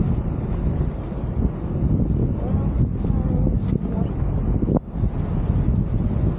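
Wind buffeting the microphone aboard a moving boat, a steady low rumble, with faint voices about halfway through.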